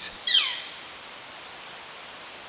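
Northern flicker giving a single 'kleer' call about a quarter second in: one short note that slurs sharply downward in pitch.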